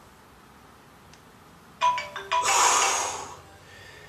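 A timer alarm goes off a little under two seconds in, playing a ringtone melody of stepped notes that marks the end of a one-minute exercise set. A loud, breathy exhale of effort runs across it for about a second.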